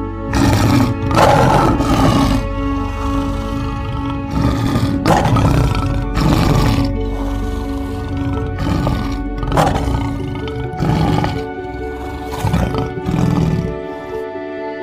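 Male lion roaring: a series of about ten loud, rough roars, spaced a second or two apart, over steady background music.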